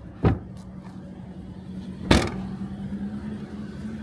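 A thump about a quarter-second in, then a louder slam about two seconds in as the Toyota Corolla Altis's boot lid is shut, over a steady low hum.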